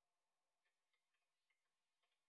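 Near silence, with a few very faint ticks.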